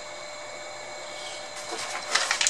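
Steady hiss of background noise with faint, thin high whine tones running under it, and light rustling near the end.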